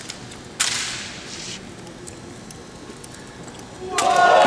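A single sharp slap of a drill rifle striking a cadet's hands about half a second in, trailed by a short echo in the big hall, with a few faint taps after it. Near the end a swell of crowd noise begins.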